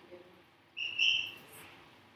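A short high-pitched chirp about a second in, lasting about half a second in two parts.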